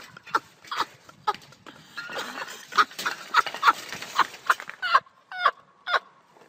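A person laughing in short, repeated cackles, about two to three a second, with a couple of gliding vocal cries near the end.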